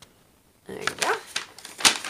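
Paper and plastic packaging rustling and crinkling as a diamond-painting canvas and its wrapped drill bags are handled, with light clicks and one sharp click near the end.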